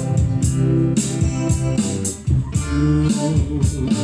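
Live band playing a song: electric guitar and an electronic drum kit, with cymbal strokes keeping a steady beat. The sound drops briefly about two seconds in, then picks up again.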